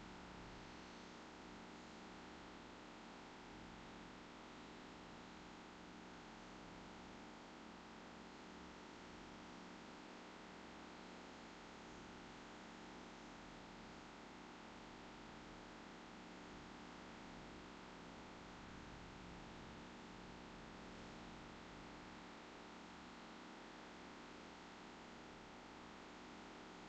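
Near silence: a faint steady hiss with a low hum, room tone.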